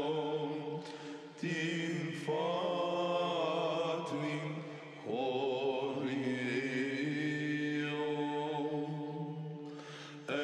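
Monastic choir singing Greek Orthodox Byzantine chant: a melodic line held in long phrases over a steady low drone (the ison), with short breaks where new phrases start.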